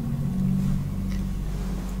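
A low, steady droning hum made of a few low tones, which shift slightly a fraction of a second in.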